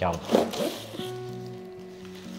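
Soft background music with long held notes, after a single spoken word. A brief rustle of cardboard and plastic packaging as the box is slid open.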